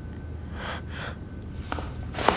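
A woman's two quick breaths, about half a second apart, then a light click near the end.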